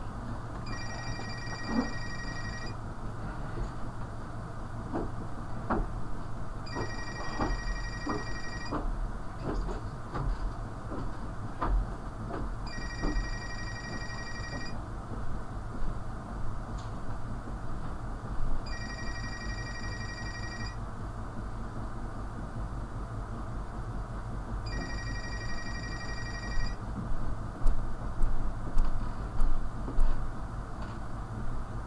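Telephone ringing with an electronic ring: five rings of about two seconds each, about six seconds apart, over a steady low hum. A few thumps come near the end.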